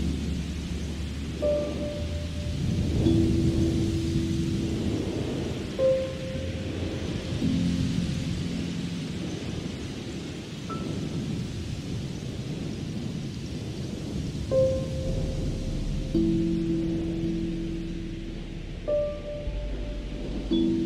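Ambient music: held low chords with a short, higher note about every four seconds, over a steady bed of soft rain and low thunder rumble.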